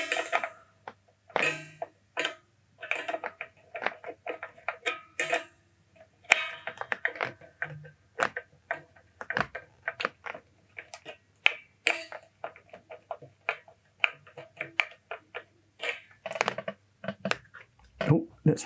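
Screwdriver turning the tremolo spring-claw screws in a Stratocaster's back cavity a slight turn at a time, loosening them to release the spring tension under the floating bridge: an irregular run of clicks and ticks, with the strings ringing briefly as the guitar is handled. A steady low hum sits underneath.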